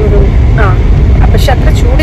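Loud, steady low rumble of a moving car heard from inside the cabin, with a woman talking over it.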